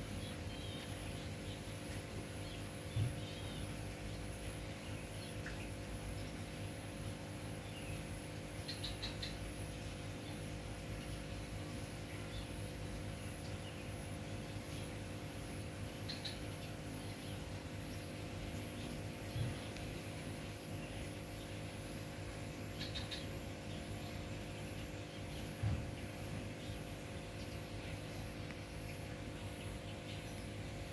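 Steady outdoor ambience: a low hum with a faint high insect trill, a few short bird chirps, and three dull low bumps spread through.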